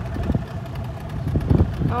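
Low, uneven rumbling noise with a faint steady hum over it, swelling briefly about a third of a second in and again about a second and a half in.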